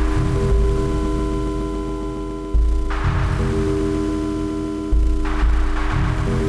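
Live electroacoustic percussion music: drums processed through a laptop, giving a sustained ringing, gong-like drone of held tones. Deep booms come about every two and a half seconds, and a rush of noise follows some of them.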